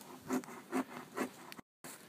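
Footsteps crunching through dry leaf litter, a little over two steps a second. The recording cuts out completely for a moment near the end, an audio dropout put down to the phone being so cold.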